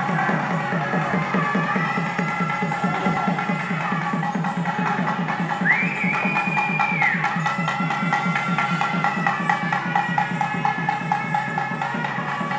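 Street music of a Gangireddu troupe: a reed pipe (sannayi) plays a melody of held, sliding notes over a fast, steady drumbeat, with one high note rising in about halfway through.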